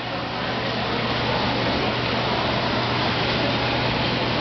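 Steady background noise of an indoor swimming pool hall, an even rushing sound with a constant low hum, like ventilation running.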